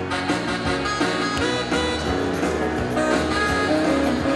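Live instrumental music led by an electronic keyboard, with a steady bass line under held melody notes.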